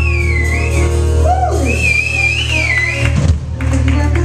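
Live jazz combo playing, with a singer's high, wavy sliding notes on top and a downward slide about a second in, over a steady low drone.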